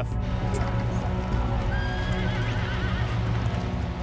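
A horse whinnying, a single quavering call about two seconds in, over steady background music with a low sustained drone.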